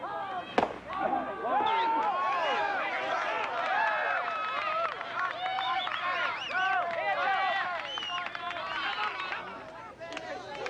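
A softball bat cracks once against the ball, the sharpest and loudest sound, about half a second in. Right after, many voices shout and cheer at once, rising and falling excitedly.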